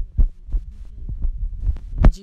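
A series of low, dull thumps, about six in two seconds and irregularly spaced, over a steady low rumble.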